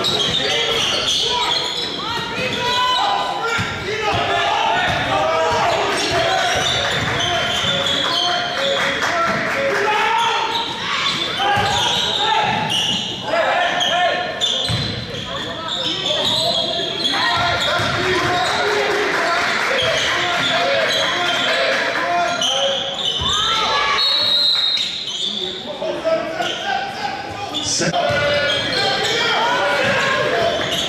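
A basketball being dribbled and bounced on a gym floor during live play, amid indistinct shouting and chatter from players and spectators that echoes through a large gymnasium.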